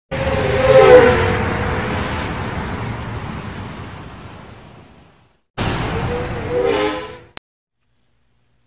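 Intro sound effect of a vehicle rushing past twice, each pass with a brief falling tone. The first fades slowly over about five seconds; the second cuts off suddenly, followed by a click.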